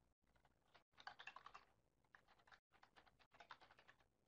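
Faint typing on a computer keyboard: a quick run of key clicks about a second in, then more scattered keystrokes.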